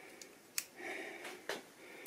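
Two light, sharp clicks about a second apart as digital calipers with a bullet comparator insert are handled and set on a bullet, with a short breath between them.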